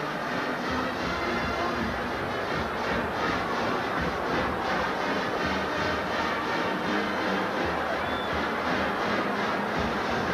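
A stadium band playing music with a steady beat, heard over a noisy football crowd.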